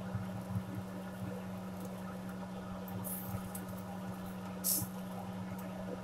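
A steady low hum, with a brief hiss a little before five seconds in and a few faint ticks.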